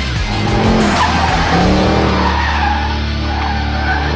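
Mercedes-Benz E63 AMG (W212) sedan's V8 engine rising and falling in pitch as it is driven hard through a corner, with the tyres squealing, over background music.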